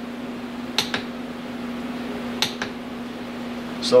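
Click-type torque wrench set at 30 ft-lb clicking out on the crankshaft nut, twice: a sharp double click about a second in and another about two and a half seconds in. The wrench reaches its setting without the engine turning, so the clutch is holding at that torque. A steady low hum runs underneath.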